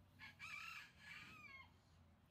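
A rooster crowing once, faint, in several linked parts that fall in pitch at the end.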